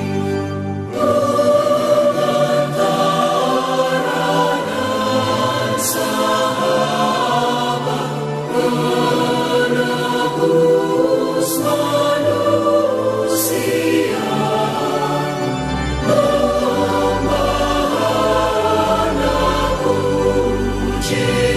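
Christian worship music with a choir singing sustained notes over instrumental backing.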